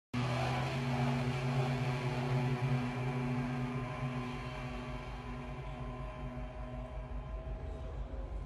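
Low, sustained droning music made of held tones, easing slightly in loudness as it goes on.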